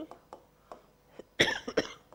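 A woman coughs, a short cough in two quick bursts about a second and a half in.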